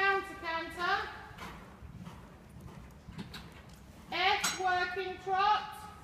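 A high-pitched young child's voice making short, wordless sing-song calls, a group in the first second and another about four seconds in. Faint hoofbeats of a horse on the arena surface come between them.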